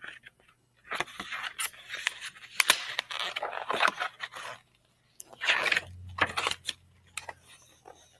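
A paperback picture book being handled and opened: the cover and pages rustle and scrape, with a few sharp clicks, in two spells.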